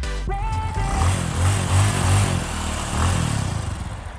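Outro sound track: music giving way to a motorbike engine sound effect with a pulsing low rumble.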